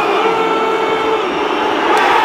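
Large football stadium crowd chanting, many voices together on long held notes.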